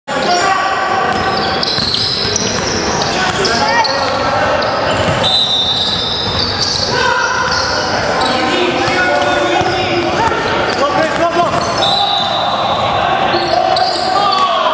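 A basketball game on a hardwood gym floor: the ball bouncing, many short high squeaks, and players' voices, all echoing in a large hall.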